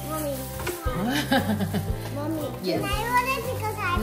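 Children's voices and a laugh over background music with steady low held notes.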